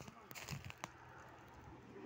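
Faint outdoor background with a few soft clicks and crackles in the first second, then only a low steady hush.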